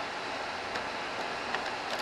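Steady background hiss with a few faint light clicks of hands handling the plastic housing of a handheld leaf blower while its handle thumb screw is loosened; the engine is not running.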